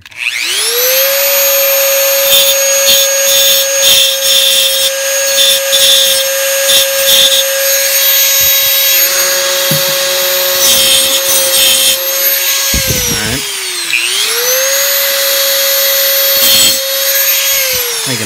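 Dremel rotary tool with a cutoff wheel spinning up to a steady high whine and grinding a notch into the lip of a metal pistol magazine in several short passes. About two-thirds through the motor slows and drops in pitch, then speeds back up, and it winds down at the end.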